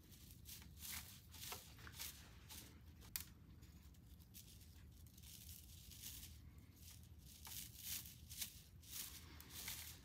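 Faint crackling and soft tearing of moss as it is handled and pressed by hand onto the soil surface, with one sharper click about three seconds in.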